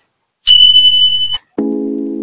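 A single steady high-pitched electronic beep lasting about a second, cut off sharply, followed by a sustained low chord as background music begins.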